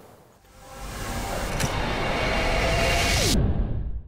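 Whoosh sound effect of an outro logo sting: a rushing noise swells over about two seconds, with a sharp click partway through. Near the end a tone falls in pitch, the hiss cuts off suddenly, and a low rumble is left.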